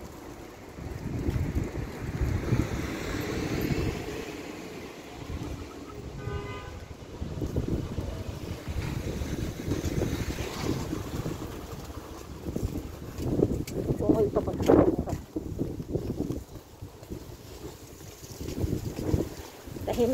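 Outdoor street ambience dominated by wind rumbling on a phone's microphone, rising and falling unevenly. A brief pitched tone sounds about six seconds in, and an indistinct voice near the three-quarter mark.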